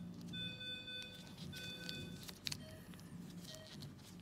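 Faint electronic beep tones, each under a second long, repeating about once a second at two or three pitches, with a few soft clicks from steel surgical instruments.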